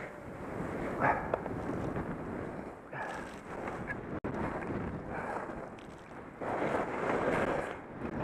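Wind buffeting a helmet-mounted camera's microphone while skiing downhill, mixed with the hiss of skis through snow; the rush swells and fades several times, loudest near the end.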